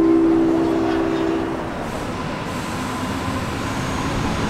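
A New York City subway train's horn sounds a long steady chord of several tones, cutting off suddenly about a second and a half in, while the approaching train's running rumble continues underneath.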